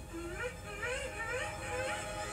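Film soundtrack heard from a TV screen: a wordless voice whose pitch rises and falls, sliding up several times.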